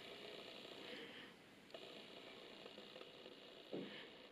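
Near silence: room tone, with a couple of faint, short knocks.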